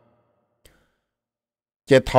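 A pause in speech, near silent, with a faint click about two-thirds of a second in; a man's voice starts speaking in Hmong just before the end.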